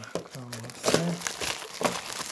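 Clear plastic wrapping film crinkling and crackling as a wrapped plastic storage box is handled, with sharper crackles about a second in and again near the end.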